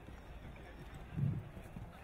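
Hooves of a mare and her foal trotting on grass, with one brief low thump just past a second in.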